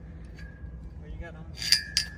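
A light metallic clink with a short ring near the end, over low background noise, with a brief faint murmur of a voice in the middle.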